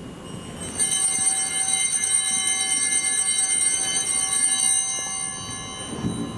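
Altar bells (Sanctus bells) ringing at the elevation of the chalice after the consecration: a cluster of small bells shaken, jingling for about four seconds from just under a second in, then fading out near the end.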